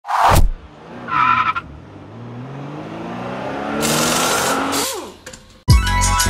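Car engine sound revving up, its pitch rising steadily for several seconds, with a burst of tyre-screech noise near its peak before it drops away. Music with a heavy drum beat comes in near the end.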